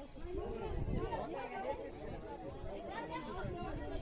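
Several people talking over one another in indistinct chatter.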